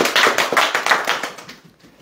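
A small group of people applauding, the clapping dying away about a second and a half in.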